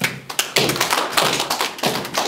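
Audience in a room applauding: a quick, irregular run of sharp taps and thuds that starts suddenly, right after the speaker's sentence ends.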